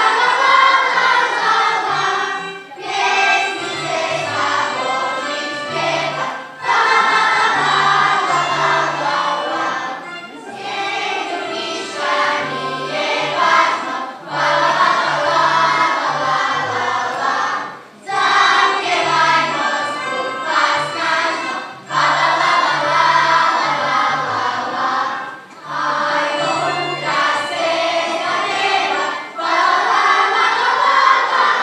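Children's choir singing a song with instrumental accompaniment that carries a low, repeating bass line; the phrases break off briefly every few seconds.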